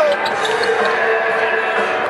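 Arena warm-up ambience: basketballs bouncing on the court, with voices and background music mixed in.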